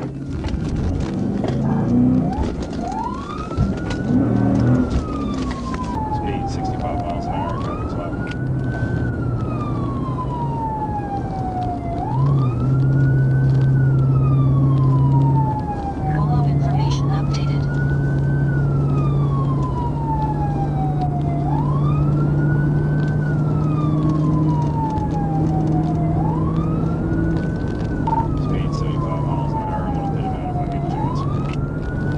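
Police car siren in wail mode, heard from inside the patrol car: each cycle a quick rise then a long slow fall, repeating about every four and a half seconds, starting about three seconds in. The patrol car's engine and road noise run beneath as it speeds up.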